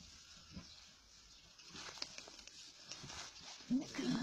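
Puppies stirring in a straw bed: faint rustling of straw with soft, small puppy sounds, and a short louder sound near the end.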